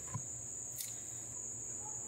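Crickets chirping in a steady, high-pitched trill that does not let up.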